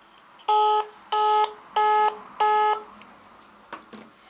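Mobile phone call-ended tone just after a call is hung up: four short, loud beeps about two-thirds of a second apart, each one a steady chord of several notes.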